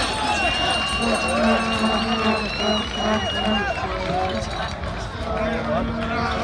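Crowd of spectators talking and calling out around an outdoor podium, with music from the sound system playing underneath and a long steady high tone through the first few seconds.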